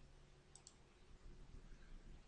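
Near silence with two faint, quick clicks of a computer mouse about half a second in, advancing the slide, over a faint steady hum.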